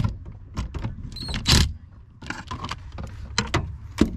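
Cordless driver briefly running a socket onto a hydroboost mounting bolt, with metallic clicks and knocks of the socket and bolt. The loudest moment is a short whir about one and a half seconds in.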